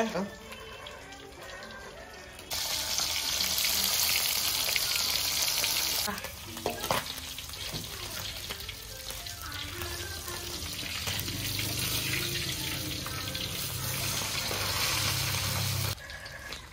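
Fish frying in hot oil in a wok, sizzling. The sizzle starts loud about two and a half seconds in, then settles to a softer, steady sizzle from about six seconds. A metal slotted spatula scrapes and knocks against the wok as the fish are turned.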